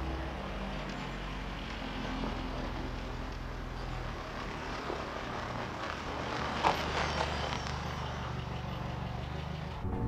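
Lotus Esprit Turbo's turbocharged four-cylinder engine running steadily as the car drives over snow, with one sharp click about two-thirds of the way through.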